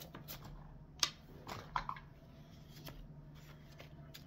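A deck of cards being shuffled by hand: faint, irregular rustles and soft card taps, with one sharper snap about a second in.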